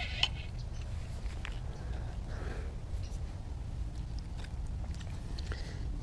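Steady low rumble of wind on the microphone, with a few faint clicks and rustles of rod, line and reel handling as a small largemouth bass is drawn to the bank and lifted out on the line.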